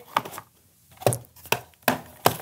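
Four sharp knocks and clunks, about half a second apart, from a hard black case and the things in it being handled on a wooden table.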